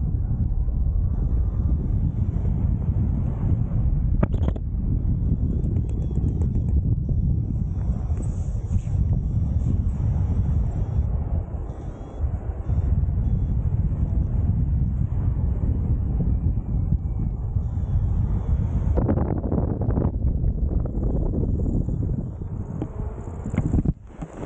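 Airflow buffeting the microphone of a camera on a paraglider in flight: a steady, deep rumble of wind noise, dropping away briefly about halfway through.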